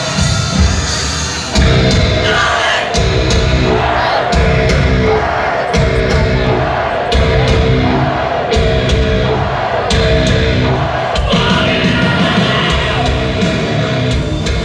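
Live heavy-metal band playing loud through a concert PA, recorded from within the crowd. The full band, with drums and distorted guitars, comes in hard about a second and a half in.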